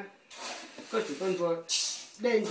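A person talking in short phrases, with a brief loud hiss near the end.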